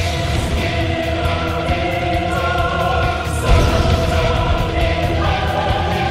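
Epic film score with a choir singing long held notes over a heavy low bass and percussion bed. A strong low hit comes about three and a half seconds in.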